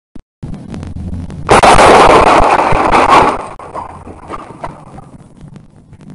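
Sound effects for an animated logo intro: a low rumble, then a loud crash-like burst about a second and a half in that dies away into scattered clicks.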